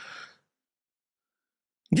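A man's audible breath into a close microphone, short and soft, lasting under half a second at the start, with his speech starting again near the end.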